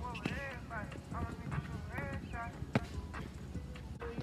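Basketball bouncing on an outdoor asphalt court: a few sharp, irregularly spaced bounces as it is dribbled and played, with players' distant shouts and talk.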